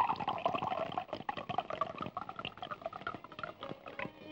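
Liquor poured from a glass bottle into a drinking glass: a continuous gurgling pour whose pitch slowly falls as it goes.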